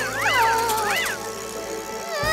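High-pitched cartoon squeaks, three quick rising-and-falling glides in the first second, over background music.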